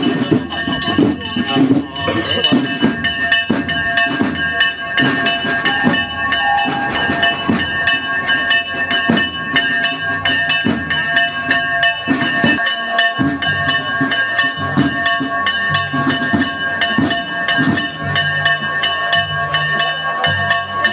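Bells ringing a fast, continuous peal: bright lingering tones struck over and over in quick regular strokes, over the low noise of a crowd.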